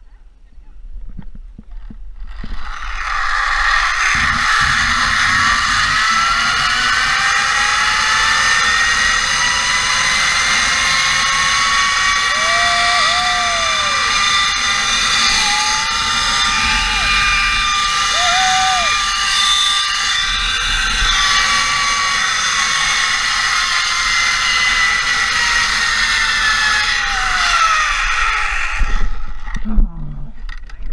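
Zipline trolley pulleys running fast along a steel cable, with wind rushing over the microphone. A loud whine rises in pitch as the rider picks up speed and falls again as the trolley slows, then stops shortly before the end as the rider reaches the landing platform.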